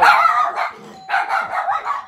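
A dog barking several times in short, loud barks, in two quick runs about a second apart.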